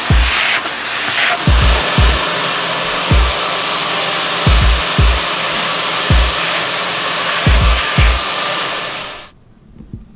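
Vacuum hose sucking lint off the back of a washer and dryer, a steady rushing of air, under background music with a regular kick-drum beat. Both cut off suddenly near the end.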